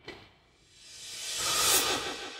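A rising whoosh sound effect: a hissy swell that builds for about a second, peaks near the end and then starts to fade.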